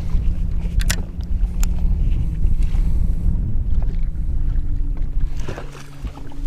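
Wind buffeting the microphone on choppy open water, a heavy low rumble, with a steady low hum underneath and a few short sharp clicks as a hooked crappie is reeled to the boat and lifted aboard.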